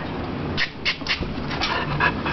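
A dog panting: short, airy breaths at an even pace, about three a second.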